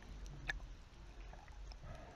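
Faint low underwater rumble, muffled as through a camera's waterproof housing, with a single sharp click about half a second in.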